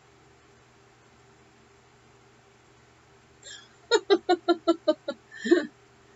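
A person's voice making a quick run of about seven short pitched bursts, roughly five a second, then one more. A faint steady electrical hum runs underneath.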